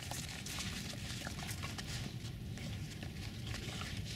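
A Tibetan mastiff moving in snow and mouthing a birch log: a run of short crunches and clicks over a low steady rumble.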